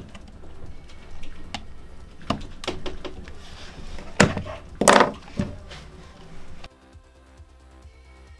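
Several short plastic clicks and knocks as a Ultimate Ears Megaboom speaker's clips and housing parts are pressed with a pry tool and handled, the two loudest knocks about four and five seconds in. Faint background music runs underneath, and after about seven seconds only the music is left.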